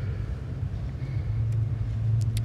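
Steady low hum of room tone, with no speech.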